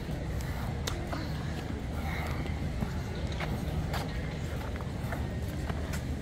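Footsteps of slide sandals slapping on a paved walkway, a string of irregular sharp clicks over a steady low rumble.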